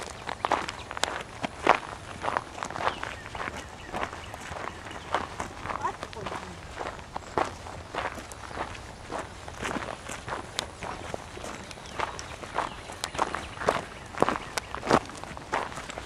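Footsteps of hikers walking over rock and dry ground on a trail, short steps landing at a steady walking pace.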